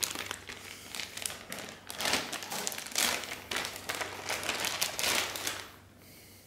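Clear plastic zip bag crinkling and rustling in bursts as a small adapter box is handled and pulled out of it; the crinkling stops just before the end.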